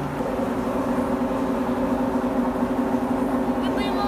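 Steady shop ambience: a low drone with a few held tones under faint, indistinct background voices.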